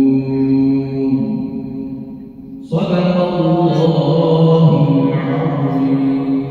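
A man's voice reciting the Quran in a melodic, chanted style. A long held note fades out, and a new, louder phrase starts about three seconds in.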